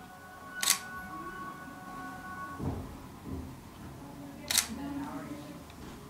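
Camera shutter fired twice, two sharp clicks about four seconds apart, as a photographer shoots a bouquet at close range.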